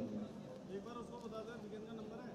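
Faint ambience of an outdoor football match: a low, steady background with brief distant voices calling now and then.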